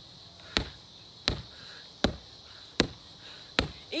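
Gloved punches landing on a freestanding punching bag: five thuds at an even pace, about one every three-quarters of a second.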